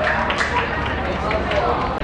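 Several voices calling out and talking on an outdoor football pitch, with a few short sharp knocks.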